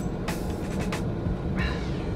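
A sip through a straw from an iced coffee, a short noisy slurp about a third of a second in, over the steady low hum of a car cabin. A brief pitched sound follows near the end.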